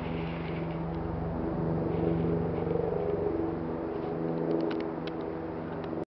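A motor engine running steadily, a low, even hum that swells slightly two to three seconds in.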